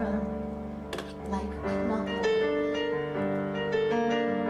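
Piano playing sustained chords that change every second or so, accompanying a song.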